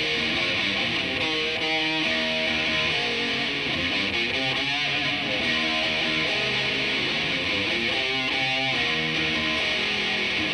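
Live rock band playing the opening of a song, led by electric guitar, at a steady level with no singing.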